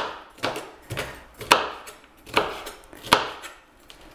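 Kitchen knife chopping a red pepper on a chopping board: about six separate cuts, each a sharp knock of the blade through the flesh onto the board, spaced roughly half a second to a second apart.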